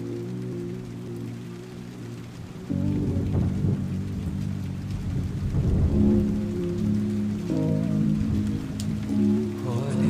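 Slowed, reverb-heavy lofi music intro of sustained low chords, layered with a steady rain sound effect. A low rumble of thunder comes in about three seconds in and fades a few seconds later.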